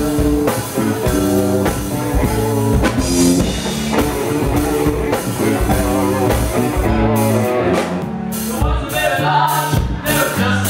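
Live rock band playing on drum kit and electric guitar, with a voice singing.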